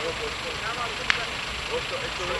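Faint voices of bystanders talking over a steady rumbling background, with one sharp click about a second in.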